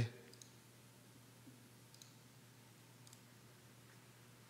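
Near silence with faint room hiss and a few weak, scattered clicks.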